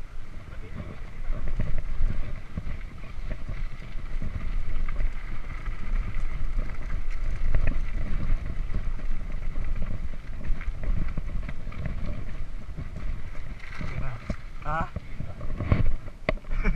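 Wind buffeting a chest-mounted GoPro's microphone over the rumble and rattle of a mountain bike rolling over a concrete path and then a rough dirt trail.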